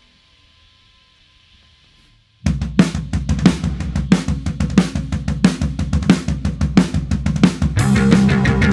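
Drum kit playing a solo intro to a punk-rock song: drums and cymbals start suddenly about two and a half seconds in, after a faint room hum, and keep a steady beat.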